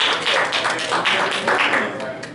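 Congregation clapping in quick bursts at the end of a song.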